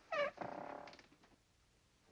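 A woman's short, high-pitched vocal 'oh' of surprise, with the pitch bending, trailing off into a softer voiced sound within about a second.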